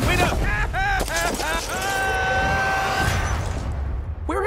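A cartoon character yelling in alarm, short cries and then one long held scream, over action sound effects of rapid blasts and crashes.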